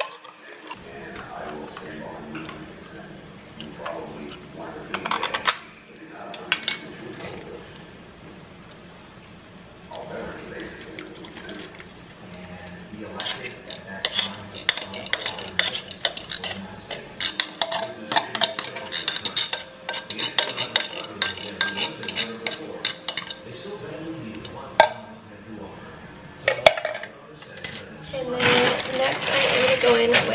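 Metal cans of kidney beans being opened, drained and tipped out: irregular clinks, taps and scrapes of metal, with one sharper knock near the end.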